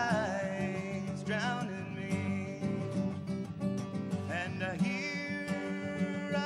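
Steel-string acoustic guitar strummed and picked, with a man's voice singing drawn-out, wordless notes that slide and waver over it.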